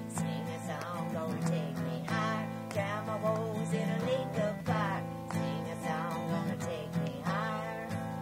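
Acoustic guitar strummed in a steady rhythm, playing the accompaniment between sung lines of a song.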